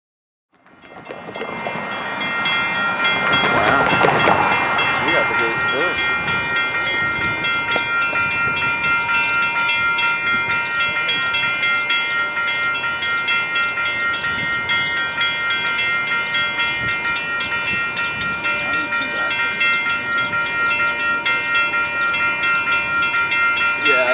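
Railroad grade-crossing warning bell ringing continuously with rapid, even strikes, the warning for an approaching train. It fades in over the first two seconds and swells louder about four seconds in.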